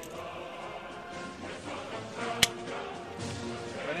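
Steady background music with held tones, and one sharp metallic click about two and a half seconds in from a Nagant M1895 revolver being handled.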